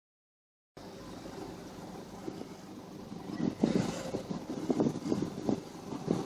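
Off-road SUV's engine running under load as it crawls up a steep sandstone slope. It starts under a second in as a steady low drone, with irregular louder surges from about halfway.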